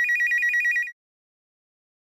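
Telephone ringing with an electronic warbling trill, pulsing rapidly, in one burst of just under a second at the start; the rest is silent.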